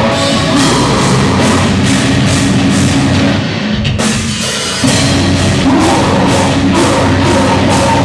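Live metalcore band playing loud, with distorted guitars and driving drums. About three and a half seconds in the music drops back briefly, and near the five-second mark the full band comes back in.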